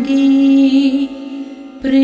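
Devotional hymn sung by a woman over Indian classical-style accompaniment. A long held note fades out about a second in, and after a brief lull a new phrase starts near the end.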